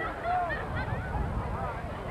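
Football crowd in the stands, many voices overlapping in short shouts and calls.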